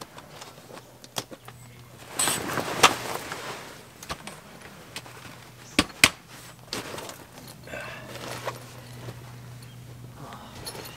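Heavy canvas swag being handled and rustled as it is pitched, with sharp clicks and knocks of its metal poles going into the clips, two close together about six seconds in. A faint steady low hum runs underneath.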